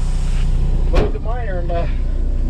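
Diesel truck engine running with a steady low drone, heard from inside the cab. A sharp click about a second in, followed by a brief voice.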